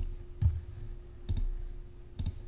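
Two computer mouse clicks, about a second apart, choosing File and then Save As from the menu.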